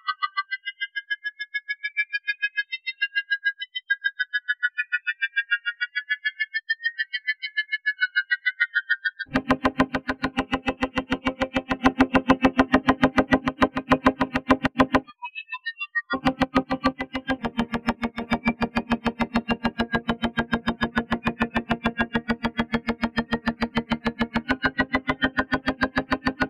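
A rapidly repeated note run through the TugSpekt spectral FFT plugin, whose image-based resonances carve gliding, pulsing high tones out of it. For the first nine seconds only these thin resonant tones are heard. Then the fuller, lower note with many overtones comes in under them, stops for about a second near fifteen seconds, and returns.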